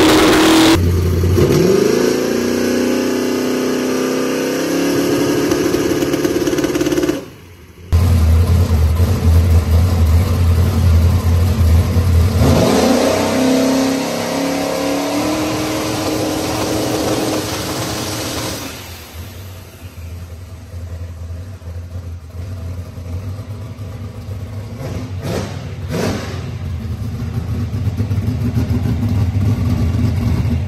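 Single-turbo LS drag-car engine held on the two-step with the transbrake for a spool test: the revs climb as the turbo builds boost up to the rev limiter. This happens twice, once in each clip. In the second run the exhaust dumps are open to help the spool.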